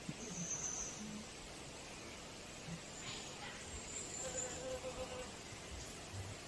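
A honeybee buzzing faintly, with a short steadier hum a little over four seconds in.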